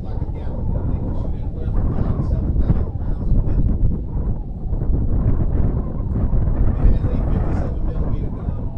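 Wind buffeting the microphone: a loud, uneven low rumble throughout.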